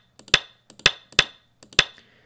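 Sampled Go-stone placement sounds from the Fox Go client: four sharp clacks, each with a short ring, as moves are placed on the board in quick succession, with a few fainter clicks among them.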